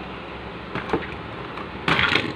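Hard plastic parts of the Commander Class Rodimus Prime toy trailer clicking and knocking as the trailer sections are unlatched and pulled apart: a few light clicks, then one louder clack near the end, over a steady background hum.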